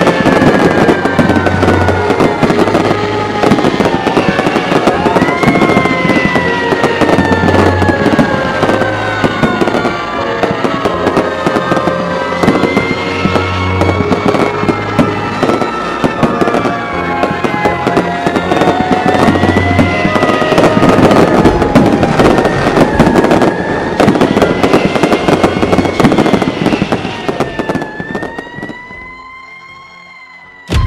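Fireworks and firecrackers crackling densely, with many overlapping gliding whistle-like tones and a low thump about every six seconds. The sound fades out near the end.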